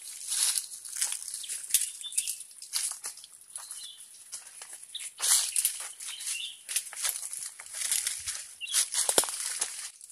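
Footsteps crunching and rustling through dry leaf litter and twigs on a forest path, an irregular run of short crackles.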